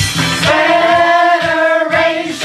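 A group of men and women singing one long held note over an upbeat pop backing track. The bass of the backing drops out for a moment near the end.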